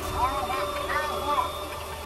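A diver's voice heard over an underwater communications link, muffled and distorted past understanding, over a steady hiss and low hum.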